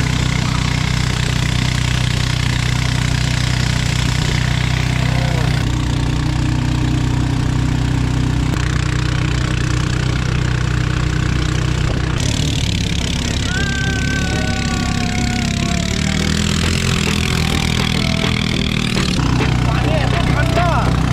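Engine of a narrow wooden river boat running steadily under way, with water rushing past the hull; the engine note shifts abruptly a few times.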